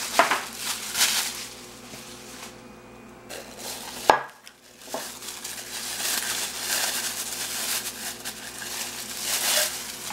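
Plastic wrapping crinkling as a stainless steel cocktail shaker is pulled out of it, in bursts at first and then steadily through the second half, with one sharp click about four seconds in.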